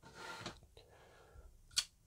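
Soft scrape of a small digital pocket scale being slid across a plastic cutting mat, followed by a single short, sharp click near the end as the folding knife is handled.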